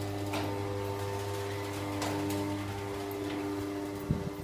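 Steady electrical hum: a low drone with several fixed higher tones above it, unchanging throughout, with a few faint clicks.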